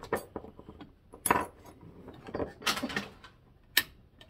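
An electrical plug and cord being handled and plugged in: a string of light plastic and metal clicks and clinks, with a sharp click near the end just as the lamp lights.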